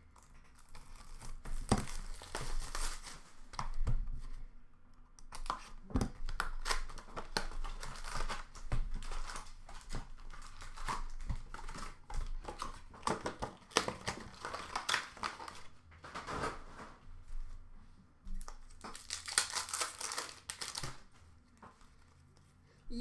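Hockey card packs being handled and torn open by hand: crinkling plastic wrappers, small clicks and rustles from the packs and box, and a few louder tearing bursts, the longest near the end.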